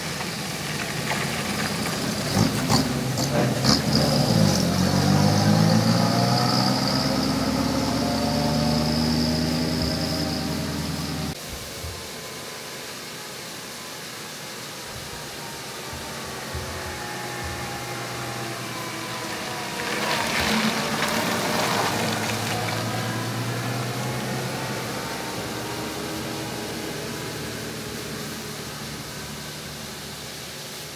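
Vintage rally cars driving past one at a time. The first car's engine grows loud, then drops in pitch and fades as it goes by, and its sound cuts off suddenly about eleven seconds in. A second car's engine swells and falls away the same way around twenty seconds in.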